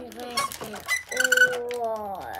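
Young child's voice exclaiming, with a drawn-out held note near the middle that slides down at the end, over light clicks from a plastic slime-mixer toy being turned.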